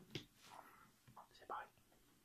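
Mostly near silence, with a short spoken word at the start and a few faint whispered words after it.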